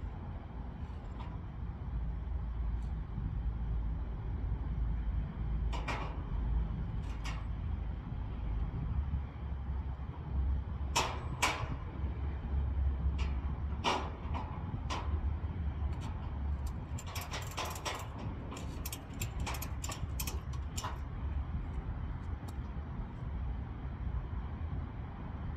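Scattered sharp metal clanks and clicks from hands-on work at the rear of a steel car-hauler trailer, over a steady low rumble. The clicks come closer together, in a quick run, in the last third.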